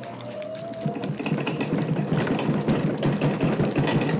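Potter's wheels running with a fast, steady whirring rattle, with a brief rising whine in the first second.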